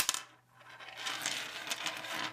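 A knitting needle clicks sharply on a wooden tabletop, then about a second and a half of scraping and rustling as the needle and yarn are handled.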